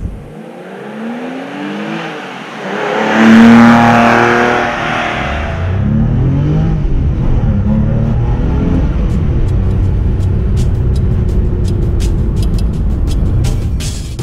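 Porsche 996 Carrera's 3.4-litre flat-six engine revving and accelerating, its pitch rising several times, loudest about three to five seconds in. Music with a ticking beat comes in under it in the second half.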